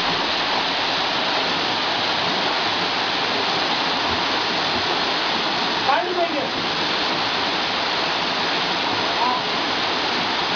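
Waterfall pouring into a rock pool: a steady rush of falling water. A short shout cuts through it about six seconds in, and another brief call comes near the end.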